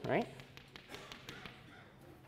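A man says "right", then chalk taps on a chalkboard as short hatch marks are drawn along a line: a quick run of light taps.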